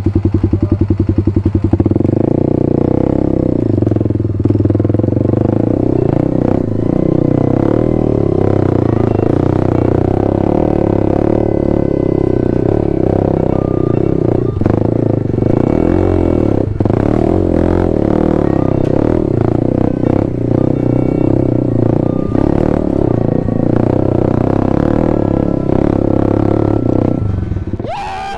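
Single-cylinder four-stroke dirt bike engine running under load as the bike climbs a rocky trail, heard close up from on the bike itself.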